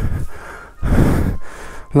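Two loud, breathy gusts right at the microphone, about a second apart, like heavy breaths or exhalations.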